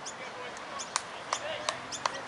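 Outdoor ambience: repeated short, sharp bird chirps, a few each second, over a steady hiss, with faint distant voices.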